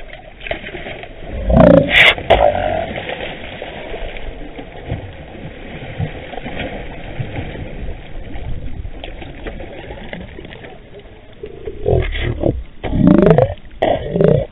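Hooked northern pike thrashing and splashing at the water's surface as it is fought in close, an irregular rough splashing through the middle. A man's short excited exclamations break in about two seconds in and again near the end, the loudest moments.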